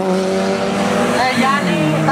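Fiat Coupé engine running at steady revs as the car drives along the strip, its note dropping in pitch about a second and a half in as it comes off the throttle.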